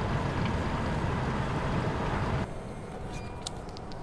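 Steady low rumbling noise of a moving escalator, cutting off suddenly about two and a half seconds in to a quieter background with a few faint clicks.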